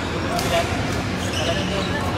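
Badminton rackets striking the shuttlecock during a doubles rally: sharp hits about a second apart, over background voices.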